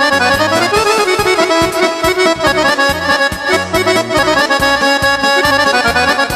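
A live band playing a fast instrumental kolo: a quick accordion-voiced melody over a steady, bouncing bass beat.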